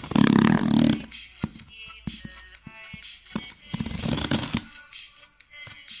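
Background music, over which a knife blade slits the packing tape on a cardboard box: two loud scraping bursts, one lasting about the first second and another around four seconds in, with small clicks of the blade and cardboard between.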